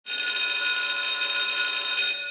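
A bell-like intro sound effect: a loud, bright metallic ringing with many high overtones. It starts suddenly and is held steady.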